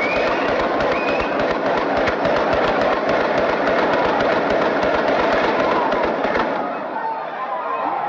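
A long, rapid string of gunshots in quick succession, with people's voices underneath; the shooting stops about six and a half seconds in.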